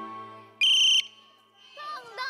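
Background music fading out, then one short, loud, shrill whistle blast a little over half a second in, lasting under half a second. Voices start up near the end.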